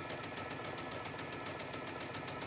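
Sewing machine stitching a straight row at steady speed through tweed and lining: a quick, even run of needle strokes.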